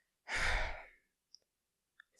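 A man sighs once: a breathy exhale of about half a second that fades out.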